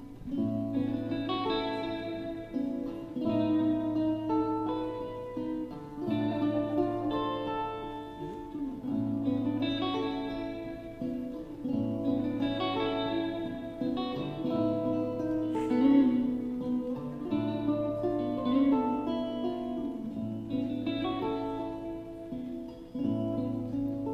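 An acoustic guitar and a hollow-body electric guitar playing a song's instrumental intro: plucked melody notes over low notes that change about every two seconds.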